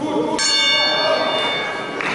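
A timekeeper's bell struck once about half a second in, ringing and fading over about a second and a half: the signal that ends the sanda round.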